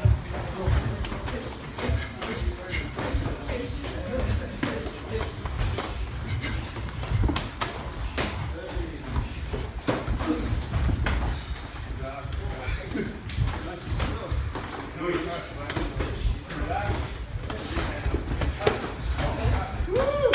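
Kyokushin full-contact sparring by several pairs at once: a continual run of thuds and slaps from punches and kicks landing, and feet striking the floor, with voices in the background.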